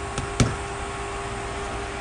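A light click, then a sharper knock a moment later, about half a second in, over a steady faint hum; the engine on the bench is not yet running.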